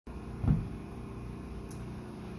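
Steady low background hum with a single dull thump about half a second in and a faint click shortly before the end.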